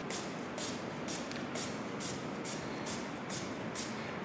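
Raw, unpeeled waxy potato being pushed over the blade of a hand-held Rösle slicer, scraping in a steady rhythm of about four strokes a second as it is cut into wafer-thin slices.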